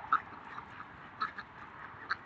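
A few ducks quacking: a handful of short, scattered quacks over a faint steady hiss.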